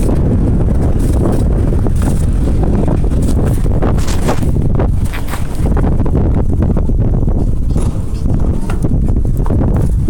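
Loud, steady rumble of wind and road vibration on a phone microphone while riding a bicycle, with irregular clicks and rattles from the bike and the handheld phone.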